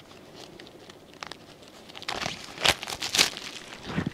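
Wrapping crinkling and tearing as a calendar is unwrapped by hand, faint at first and louder from about halfway through.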